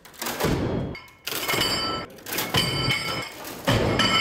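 Metal weight discs being set down on a stack, clanking with a ringing metallic note, several times in a row.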